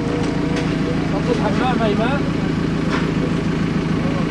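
An engine running steadily, a low, even hum. A voice calls out briefly about halfway through, and there are a couple of short, sharp knocks.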